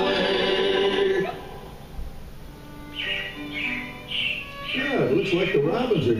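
Recorded show music with singing, ending about a second in. After a lull, a few short high chirps sound, then a sliding voice-like sound near the end.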